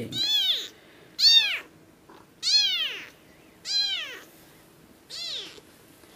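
Very young kittens mewing: five high-pitched calls, each rising and then falling in pitch, a little over a second apart.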